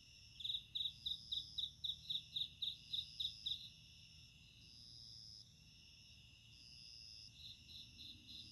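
Crickets chirping at night: one gives a fast run of short, high chirps, about four a second, for the first few seconds and again near the end, over steady high trills from others.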